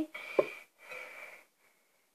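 Faint breathy sounds from a girl, with one short sharp voiced noise about half a second in.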